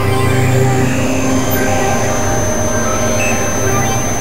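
Experimental electronic synthesizer drone: many held tones layered over a strong low hum. A thin high whistle-like tone slides down over the first couple of seconds, then holds steady.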